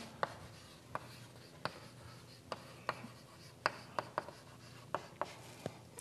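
Chalk writing on a blackboard: about ten short, sharp taps at uneven intervals, with faint scratching between them.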